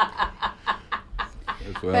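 A person laughing in quiet, short chuckles, about four or five a second.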